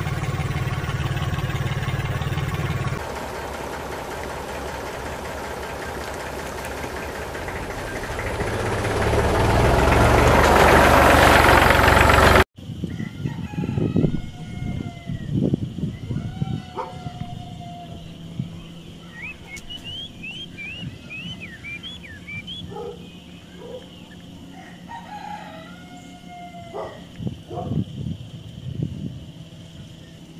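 A steady running noise with a low hum swells louder and then cuts off abruptly about twelve seconds in. After it come birds calling and chirping over a faint steady high tone, with a few light knocks.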